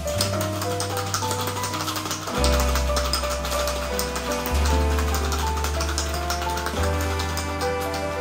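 Background music with sustained piano-like notes over a bass line that changes every couple of seconds, over the fast, irregular rattle of ice in a cocktail shaker being shaken.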